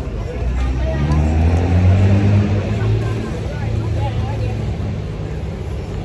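A motor vehicle's engine running on a nearby street, a steady low drone that swells about a second in and eases off after three seconds, with scattered market voices underneath.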